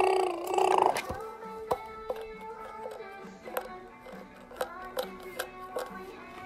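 Baby's toy guitar being played: a loud burst of notes in the first second, then a string of short, separate musical notes.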